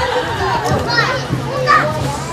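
Young children's voices, shouting and playing in a playground, over background music.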